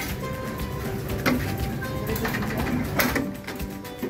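A caravan's pull-out kitchen drawer running on its metal slide runners with a steady rattle, and two knocks, about a second in and about three seconds in. Background music plays underneath.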